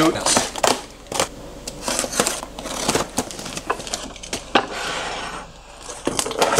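Box cutter slicing through packing tape and cardboard on a shipping box, with the cardboard tearing and rustling: an uneven run of short sharp cuts and rips.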